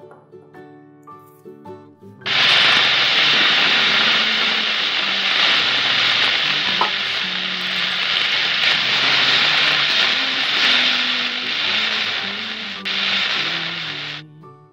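Frying sizzle sound effect standing in for stir-frying on a toy stove. It starts abruptly about two seconds in and cuts off suddenly just before the end, over soft background music.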